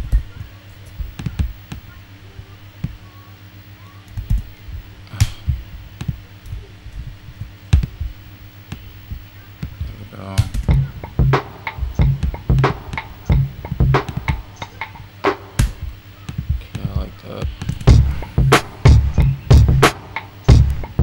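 A sampled drum loop played back in music production software: short scattered hits in the first half as pieces of the chopped loop are played, then from about halfway a steady repeating drum pattern with deep pitched kick thumps, louder near the end.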